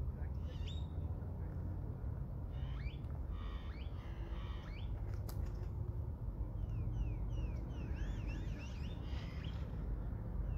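Small birds calling: runs of short, rising, whistled chirps, one cluster about three to four seconds in and a longer run from about seven to nine and a half seconds, over a steady low rumble.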